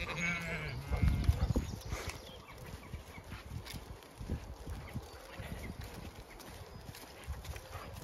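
A Zwartbles sheep bleats once, briefly, right at the start, followed by soft irregular thuds of steps on muddy ground as the flock moves along.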